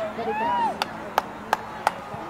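Four sharp clicks, evenly spaced about a third of a second apart, in the second half, over distant voices calling on the field.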